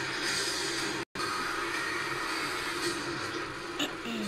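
Movie-trailer soundtrack: a dense wall of music and sound effects that drops out completely for a split second about a second in. A short sharp click comes near the end.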